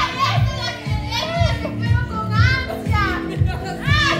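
Young women's high-pitched squeals and whoops, in short bursts again and again, over background music with a steady bass beat.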